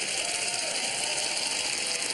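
Studio audience applauding, a steady dense clatter of clapping.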